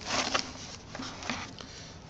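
Rustling and scraping of a cardboard box and packaging as a biometric keypad reader is handled and pulled out of it. It is loudest in the first half second, then fainter with a few light ticks.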